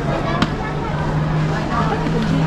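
Busy airport concourse: chatter of passing travellers over a steady low hum, with one sharp click about halfway through.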